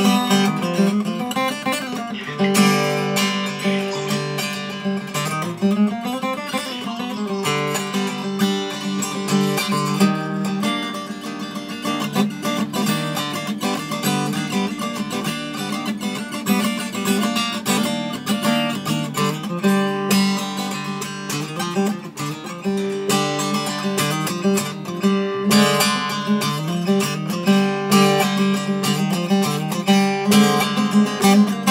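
Elegee Adarna acoustic guitar, solid Sitka spruce top and rosewood body with phosphor bronze strings, played unplugged: a fingerpicked melody over a bass line, with a few notes sliding in pitch about five to seven seconds in.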